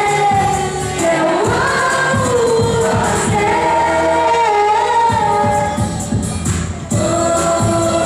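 Live singing over a backing track through a concert sound system, the voices holding long, sliding notes over a steady bass.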